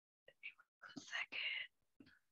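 Faint, indistinct speech, soft like a whisper, in short broken bits starting a moment in and stopping a little before the end.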